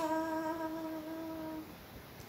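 A woman's unaccompanied singing voice holding one long, steady note at the end of a phrase, fading out about a second and a half in.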